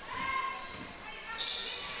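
Faint court sound in a large indoor gym: a basketball dribbled on the hardwood floor, with players' voices calling out.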